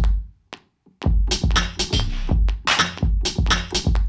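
Electronic drum kit from the Battery drum sampler, triggered from a MIDI keyboard's keys: a hit or two, a short gap, then a steady beat of deep kicks and crisp high hits from about a second in.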